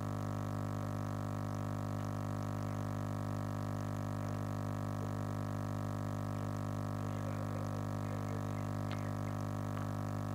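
Steady electrical hum with a buzzing row of overtones, typical of mains hum in a microphone and sound-system line. Faint rustles in the second half and a sharp click near the end, as the microphone and papers are handled.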